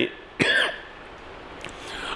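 A man clears his throat with one short cough about half a second in, then room tone.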